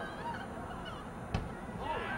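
Several short honking calls that arch up and down in pitch, with a single sharp thump about one and a half seconds in.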